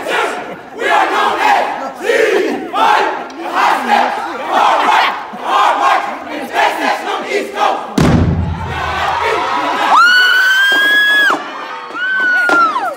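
A drumline shouting a rhythmic chant together, about one shout a second. About eight seconds in comes one loud, deep drum hit, followed near the end by a long, shrill, held high note.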